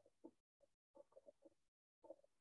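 Near silence over a video call, with faint, short snatches of sound that keep cutting in and out.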